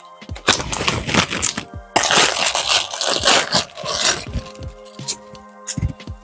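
Clear plastic packaging bag crackling and rustling as it is handled and opened, loudest in the first four seconds, over background music.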